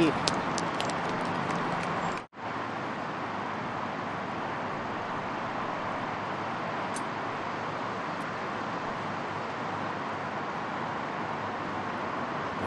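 Steady outdoor background noise from a golf-course field microphone, an even hiss with no distinct events, cut by a short dropout about two seconds in.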